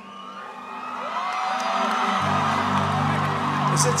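A large congregation cheering and whooping, the noise swelling over the first second, over music whose sustained low chords come in about two seconds in.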